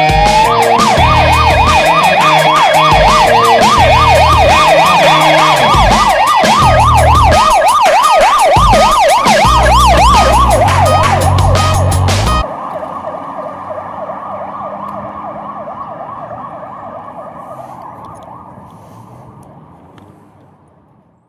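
Ambulance siren yelping in fast up-and-down sweeps, about two to three a second, over rock music with drums and guitar. The music cuts off about twelve seconds in, and the siren carries on alone, fading out near the end.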